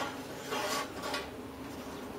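Metal scraping and rubbing as a plasma torch's brass circle-cutting guide is slid over a steel sheet along its radius rod, with a couple of short scrapes about half a second and a second in.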